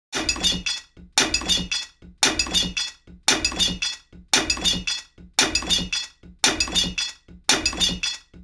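A sound of things breaking, crashing clatter with a thud, repeated as a loop: eight identical crashes evenly about once a second.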